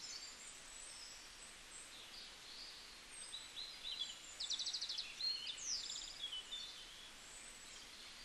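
Faint birds chirping, with scattered high chirps and short falling calls and a couple of rapid trills around the middle, over a light steady hiss.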